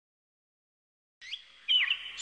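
Silence, then a little over a second in small birds start chirping, with quick, sweeping chirps getting louder near the end.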